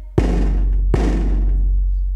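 Two deep strokes on a hand-held drum beaten with a stick, about three quarters of a second apart, each left to ring out and die away.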